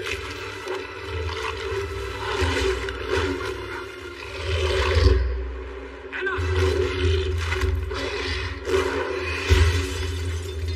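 Film soundtrack of dramatic music mixed with creature sound effects: low growls and roars over a heavy rumble, with loud swells about five seconds in and again near the end.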